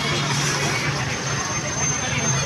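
Busy street noise: vehicle engines running with a steady low hum under people's voices, and a thin high tone joining in about halfway through.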